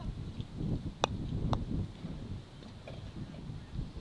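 Two sharp clacks of a croquet mallet and balls, about half a second apart, the first the louder, over low wind rumble on the microphone.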